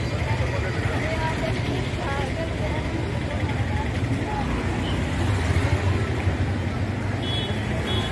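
Street traffic: a steady low engine rumble with a motorcycle passing, and people's voices in the background. A brief high-pitched tone sounds near the end.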